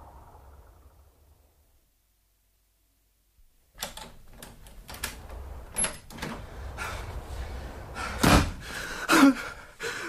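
Radio-drama sound effects: a cry dies away into a moment of silence, then a run of knocks and rattles leads to a heavy door banging shut about eight seconds in, followed by a man's short gasp.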